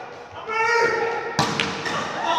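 A player's call, held for about a second, then a sharp thump of the volleyball about a second and a half in, with a second smaller knock just after, echoing in the large gym.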